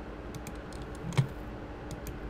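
A few separate clicks of a computer keyboard, the loudest a little past the middle, over a faint steady hum.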